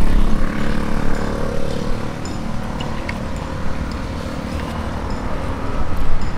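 Engine of a motor vehicle on the nearby street, a low rumble that is loudest for the first second or two and then fades to a steady background drone.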